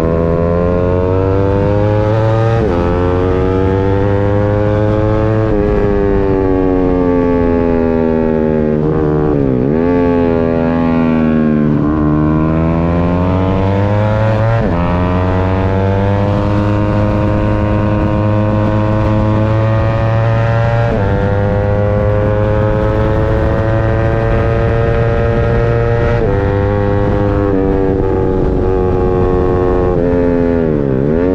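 Racing 150cc sportbike engine heard onboard at high revs, its pitch climbing and then dropping sharply at each gear change. The pitch dips low and climbs back up once or twice as the rider brakes and downshifts for corners.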